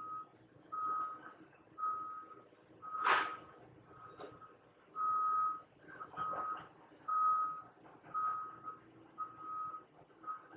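A construction vehicle's reversing alarm beeping faintly, one single-pitched beep about every second. There is a short rustle about three seconds in.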